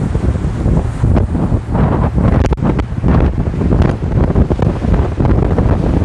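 Strong wind buffeting the microphone on a moving open motorboat, over the rush of water along the hull and the boat's engine.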